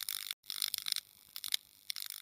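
Ticking, clicking sound effects of an animated logo card: a few short clusters of high, clock-like clicks with brief silent gaps between them.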